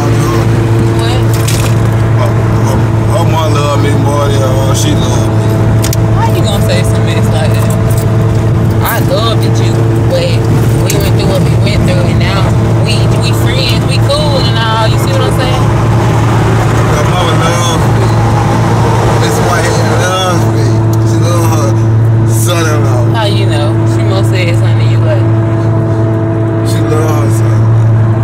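Steady low drone of a car's engine and road noise inside the moving cabin, running evenly under ongoing conversation.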